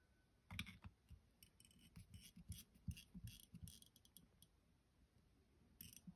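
Faint, irregular small clicks and ticks of a screwdriver turning the tiny idle mixture screw back into a 1984 Honda 200X carburetor body, screwing it in toward its seat before it is set back out to its original setting.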